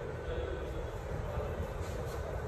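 Steady low rumble with a faint, even drone above it, with no distinct event standing out.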